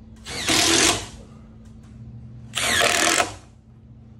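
Cordless Makita impact driver driving a timber screw into a rough-cut wooden joist in two short bursts, about two seconds apart: starting the first screw before the joist hanger goes on.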